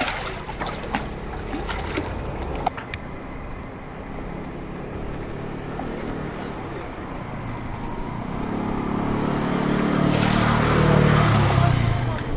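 Sea turtles splashing at the water's surface in the first few seconds, then an engine running that grows steadily louder from about eight seconds in.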